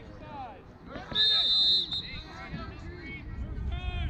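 A referee's whistle blown once, a shrill steady blast lasting under a second, over shouting voices.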